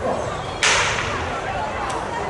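A single sharp crack of the starting signal for a 100 m sprint heat, heard from the far end of the track about half a second in and fading quickly, over a background of crowd voices.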